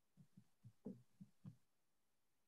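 Near silence, broken by about six faint, short, low thumps spaced unevenly over the first second and a half.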